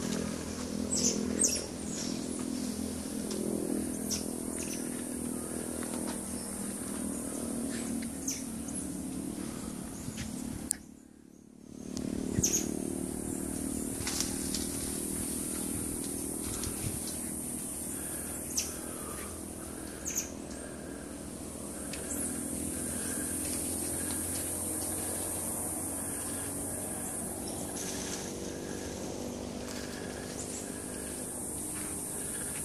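Outdoor ambience of a steady high insect drone, a few short bird chirps and a low, steady engine hum. Everything drops out briefly about eleven seconds in.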